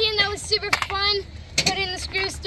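Only speech: a boy's voice talking.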